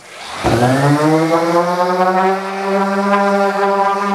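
A DeWalt 5-inch random orbit sander with 220-grit paper, sanding bare wood: its motor starts up with a whine that rises in pitch for about a second, then runs steady.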